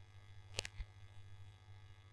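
Faint steady electrical hum in a quiet room, with a single sharp click a little over half a second in.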